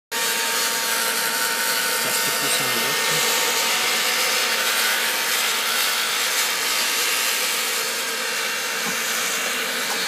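Handheld hair dryer blowing steadily against a car's sheet-metal body panel, heating the metal around a dent: an even rush of air with a thin, constant motor whine.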